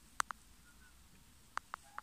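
Light, sharp clicks of small metal tweezers and scissors working on a tarantula egg sac on a plastic lid: a quick pair a moment in, then three more near the end.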